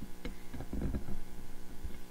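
A screwdriver slowly stirring syrup-thick two-part silicone encapsulant in a plastic tub, its shaft knocking and scraping against the tub in a few irregular light clicks, busiest around the middle.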